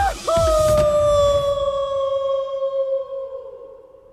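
A man's long, high yell as he drops away from a cliff edge, held on nearly one pitch, sinking slightly and fading away over about three seconds.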